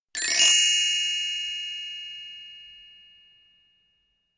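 A single high, bright chime struck once and left to ring, fading away over about three and a half seconds: the audiobook's cue to turn the page.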